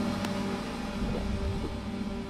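Low, steady droning tones from an animated film's score and sound design, slowly fading, with one faint click near the start.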